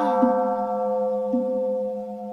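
A long, steady held musical note with clear overtones over a low steady drone, with three soft low notes sounding beneath it, in the accompaniment of a Buddhist chant.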